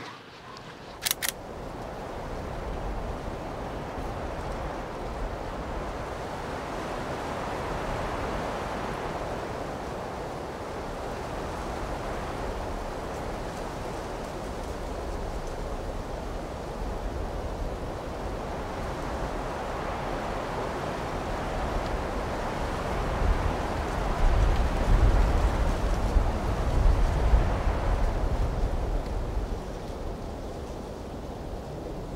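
Wind rushing steadily, slowly swelling and easing, with heavy gusts buffeting the microphone in a low rumble for several seconds near the end.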